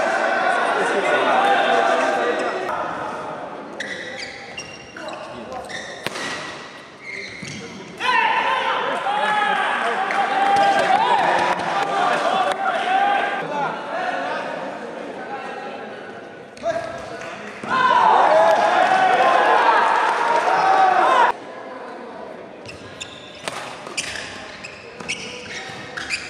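Badminton play in a large hall: sharp racket strikes on the shuttlecock during rallies, with stretches of voices in between.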